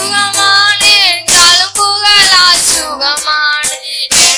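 Two boys singing a worship song into microphones, accompanied by a Yamaha PSR-S775 arranger keyboard with held bass notes and a drum rhythm.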